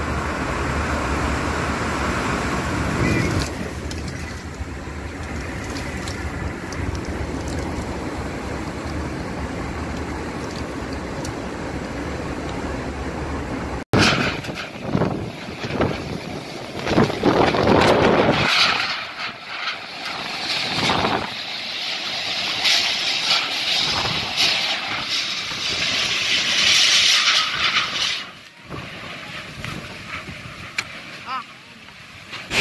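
Typhoon-force wind and heavy rain. For about the first half, steady wind with a low rumble buffeting the microphone; then, after a sudden cut, a second recording of gusting wind and driving rain that surges and eases, loudest in the gusts.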